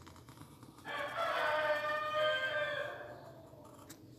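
A rooster crowing once, a single call of about two seconds that starts about a second in and trails off.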